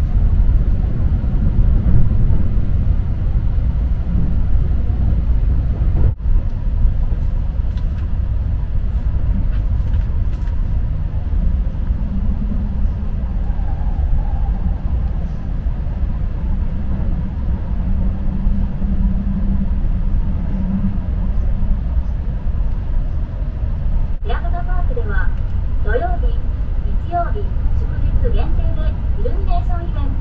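Running noise of a Keihan limited express heard from inside the car: a steady low rumble of wheels on rail, with a faint motor hum in the middle stretch. From about 24 seconds in, voices talk over it.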